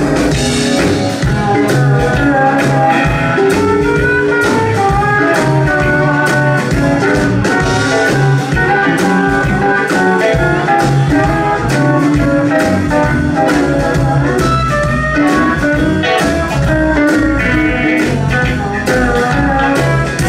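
Live band playing an instrumental break: electric guitars over a drum kit keeping a steady beat, with keyboard.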